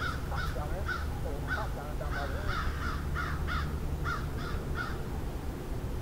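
A bird calling outdoors in a run of about a dozen short calls, roughly two or three a second, stopping near the end.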